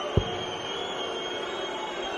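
A steel-tip dart thuds once into the dartboard just after the start, over a steady crowd murmur. A single high whistled note rises at first, holds for about two seconds and falls away at the end.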